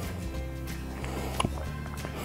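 Background music with steady held notes, and one brief click about one and a half seconds in.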